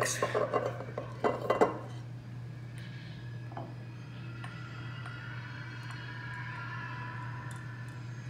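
Glass and metal clinks as a whiskey bottle with a metal pour spout is picked up and a spoon is set against a shot glass. Then comes a faint, steady trickle as the whiskey is poured slowly over the back of the spoon to float a layer on the shot.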